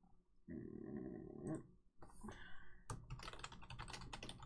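Typing on a computer keyboard: a quick, uneven run of key clicks starting about two seconds in. It is preceded by a short, low, muffled sound about a second long.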